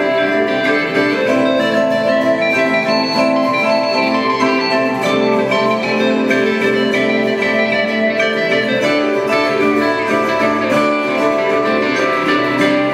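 Three steel-string acoustic guitars and three vibraphones playing an instrumental tune together in the chacarera rhythm, a traditional Argentinian folk rhythm. Plucked guitar lines sit over the ringing, sustained notes of the vibraphones at a steady level.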